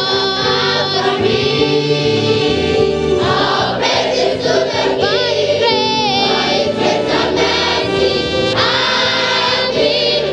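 Children's choir singing a gospel song with a female lead voice, over violin and ensemble accompaniment.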